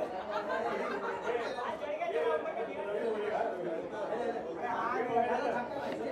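Several people talking over one another, an indistinct chatter of voices with no single clear speaker.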